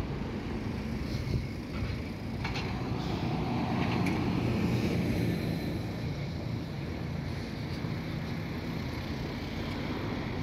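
Road traffic: cars running along a town street, a low steady rumble that swells about four seconds in as a vehicle passes close by.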